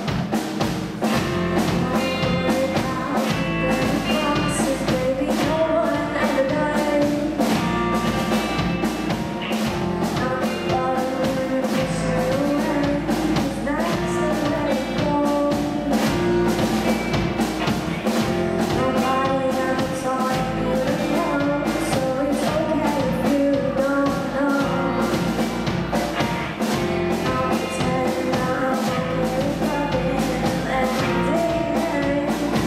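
Live rock band playing a song: a drum kit keeping a steady beat under electric guitar and bass guitar, with a girl singing into a microphone. The music is loud and runs without a break.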